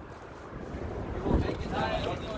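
Wind buffeting the microphone as a low, steady rumble that swells about a second and a half in, with faint distant voices in the second half.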